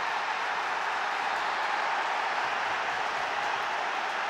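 Football stadium crowd cheering a goal: a steady, even wash of many voices and applause.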